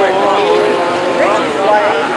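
Dirt-track modified race cars' engines running together as the field circulates, several engine notes overlapping and rising and falling in pitch.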